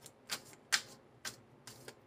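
A deck of tarot cards being shuffled by hand, the cards slapping together in short crisp clicks, about five of them, roughly one every half second.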